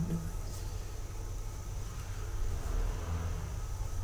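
Steady low background rumble and hum with faint hiss; no distinct events.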